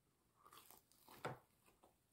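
A person biting into food and chewing it close to the microphone. There are a few faint crunches, the loudest a little past the middle.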